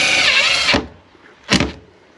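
Cordless impact driver driving a stainless steel screw into a corner of the external fan grille, running then winding down with a falling pitch within the first second, followed by a short second burst about one and a half seconds in.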